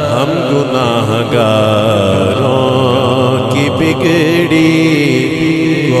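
A man singing a naat (Urdu devotional poem) into a microphone, drawing out the words in long melodic runs. Near the end he holds one long note.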